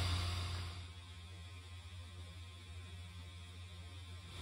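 Faint, steady low hum of the inflatable Santa's built-in blower fan keeping the figure inflated; the outdoor background fades out in the first second.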